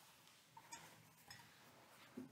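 A linen cloth being wiped around a silver chalice, giving a few faint, short squeaks against the metal, about three in two seconds, over near silence.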